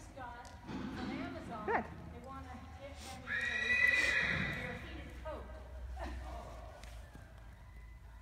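A horse whinnying once, a long high call of about a second and a half starting about three seconds in; it is the loudest sound here.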